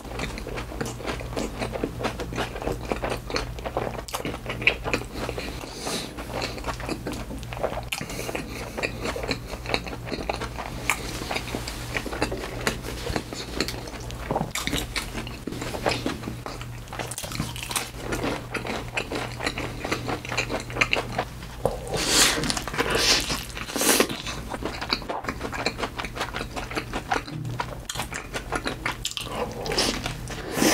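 Close-miked mouth sounds of someone eating fast food: steady chewing with many small crisp clicks. A louder burst of crunching comes about two-thirds of the way through.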